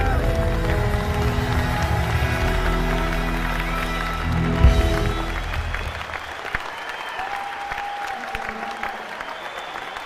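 A live rock band with electric guitar rings out on its closing chord, with a final hit a little before five seconds in; the music then falls away into audience applause.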